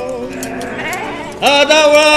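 A sheep bleats in a gap between sung lines. About one and a half seconds in, a singer's voice comes back in with a loud, wavering held note.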